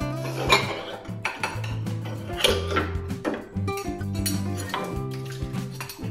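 Ceramic bowls and a metal spoon clinking against each other in a fireclay sink as dishes are washed by hand, with several sharp clinks, the loudest about half a second and two and a half seconds in. Acoustic background music plays underneath.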